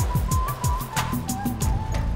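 Electronic TV news jingle for a segment bumper: a fast, even ticking beat with repeated falling low synth swoops under a thin high melody line.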